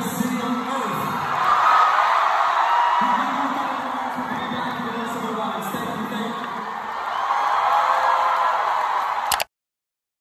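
Live concert music with the audience singing along and cheering, recorded on a phone in the hall. It cuts off suddenly near the end.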